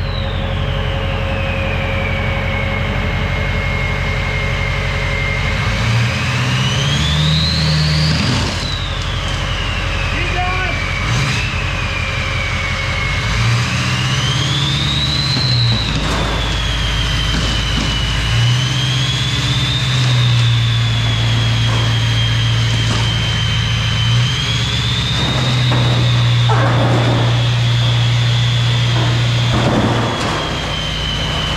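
Golf cart motor whining as it tows a heavy rolling toolbox off a trailer, the whine rising and falling in pitch as the cart speeds up and slows, over a steady low hum. Crunching from the trailer floor under the toolbox's casters.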